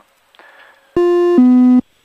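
Two-note electronic alert tone from the cockpit avionics, heard through the headset intercom: a higher tone for under half a second, then it steps down to a lower tone of the same length and cuts off.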